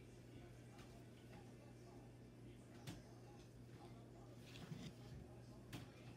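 Near silence: room tone with a steady low hum and two faint clicks, one about three seconds in and one near the end.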